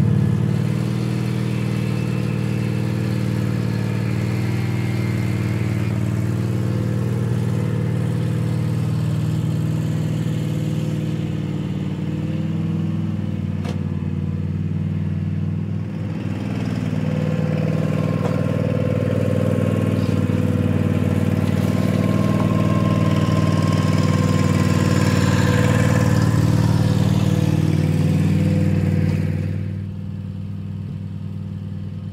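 Riding lawn mower's engine running steadily under way, with a brief dip and a change in tone about halfway through.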